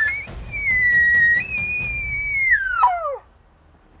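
Elk bugle: a rising glide that climbs into a long, high, whistling note, steps up once, then falls steeply and breaks off a little after three seconds in.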